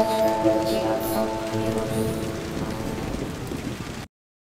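Channel intro sound: a few held musical tones over a steady hiss like rain, slowly fading and then cutting off abruptly at the end.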